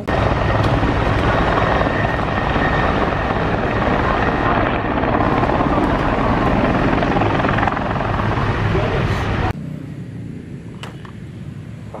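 Military helicopter close by, its rotor and turbine running loud and steady. The noise cuts off abruptly about nine and a half seconds in.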